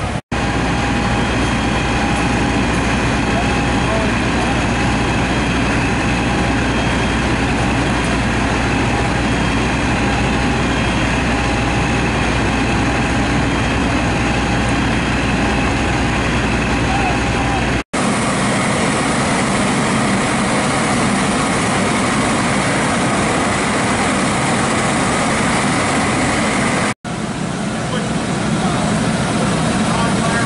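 Fire engine diesel engines running steadily, a loud, dense mechanical noise with a deep low rumble that is heavier through the first part.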